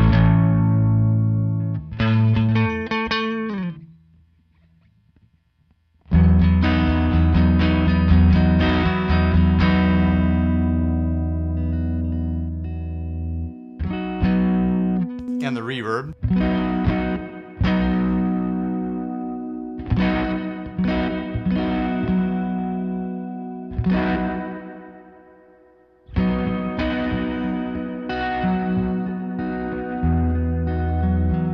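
Jazzmaster-style electric guitar playing strummed chords through a clean boost pedal. The chords ring out and fade, with a short pause about four seconds in, one long held chord, then a series of shorter strums.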